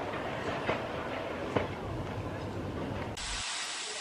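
Narrow-gauge steam locomotive standing with a steady hiss of steam and a low rumble, broken by a few sharp metallic clicks. A little after three seconds in, the sound cuts abruptly to a quieter, thinner hiss.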